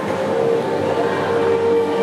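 A steady drone of several held tones over a hiss, part of a performance soundtrack played over a hall's loudspeakers.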